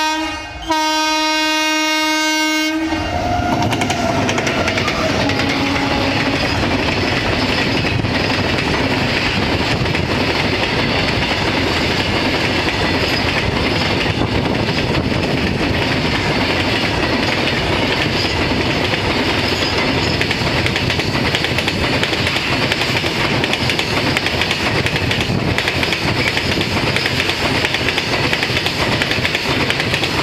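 WAG-9H electric locomotive's horn sounding a blast that breaks off briefly at the start and sounds again for about two seconds. The horn then gives way to the steady, loud rumble and clatter of a freight train passing close by, as a long rake of BCNA covered wagons rolls over the rails.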